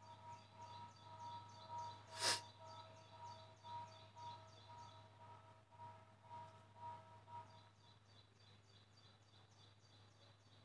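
Faint outdoor garden ambience: a repeated chirping call, a few pulses a second, that stops near the end, over a low steady hum. About two seconds in comes one short, louder noise.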